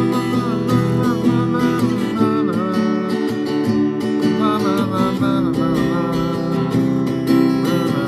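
Steel-string acoustic guitar played, with a picked melody line woven between ringing strummed chords.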